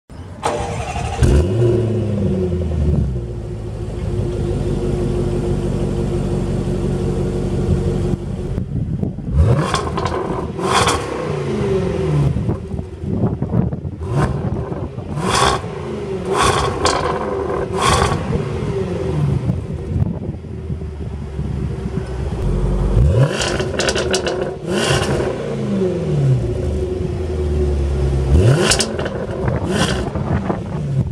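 Range Rover Sport SVR's supercharged 5.0-litre V8, heard at the tailpipes through an X-pipe exhaust with the muffler removed and the particulate filter kept. It idles and is revved in a series of quick throttle blips, the pitch rising and falling each time, with sharp cracks as the revs drop.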